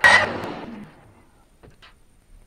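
A single sharp knock of thin wooden strips with a rattling tail that dies away within about a second, followed by a couple of faint clicks.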